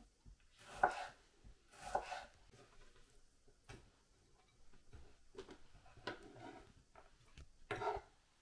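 Kitchen knife slicing tomatoes on a wooden cutting board: a few soft, separate cuts and taps, spaced about a second apart.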